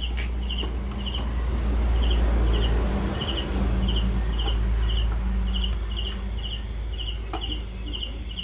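An insect chirps repeatedly, a short high pulsed chirp about twice a second, sometimes in quick pairs, over a steady low rumble.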